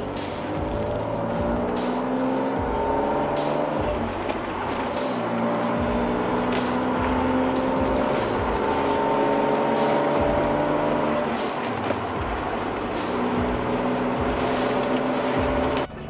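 BMW E46 323ci's straight-six engine heard from inside the cabin, pulling through the gears of its manual gearbox. The pitch climbs steadily, drops back at each upshift, and climbs again, several times over.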